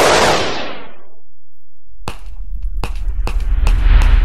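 A burst of noise that dies away over about a second, a short gap, then a run of gunshot sound effects, a few cracks a second, over a low rumble.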